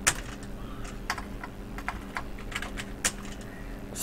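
Computer keyboard typing: scattered, irregular keystrokes as a word is deleted and another typed in its place, with a sharper key click just after the start and another about three seconds in.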